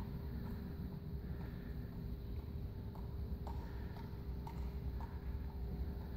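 Soft taps of a small ball landing in the hands as it is tossed and caught, about two a second, over a steady low hum of the room.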